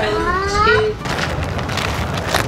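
A child's voice calls out in one drawn-out, slightly rising sound lasting about a second, followed by a rough rustling noise.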